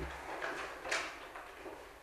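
Quiet meeting-room tone with a few faint rustles and soft knocks from people raising and handling cardboard voting cards.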